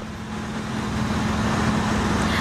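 Steady outdoor rushing noise on a live field microphone, fading up over the two seconds, with a steady low hum underneath.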